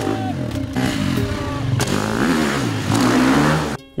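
Dirt bike engine revving up and down several times as it is ridden across a gravel yard, its pitch rising and falling with the throttle. It cuts off suddenly near the end.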